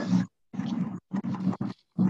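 Background noise from an unmuted participant's microphone coming through a conference call: a rough, noisy sound over a steady low hum, cutting in and out in several short bursts with sudden silent gaps.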